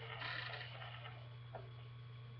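Faint rustling of small makeup items being handled, with one soft click about one and a half seconds in, over a steady low electrical hum.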